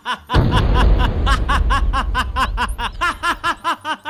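A man's long, loud villainous laugh, a rapid steady string of "ha-ha-ha" syllables. A deep rumble comes in just after it starts and fades away over the next couple of seconds.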